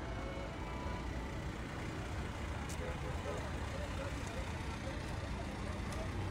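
A Toyota Hiace van's engine runs as the van moves slowly past close by, a steady low rumble, with the murmur of a crowd's voices behind it.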